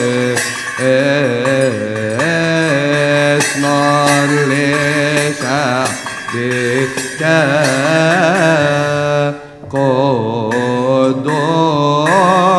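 Coptic Orthodox liturgical chant: voices singing a slow, melismatic hymn response as a single line, the notes wavering and ornamented, with sharp strikes keeping a steady beat. It breaks off briefly about nine and a half seconds in, then a new phrase begins.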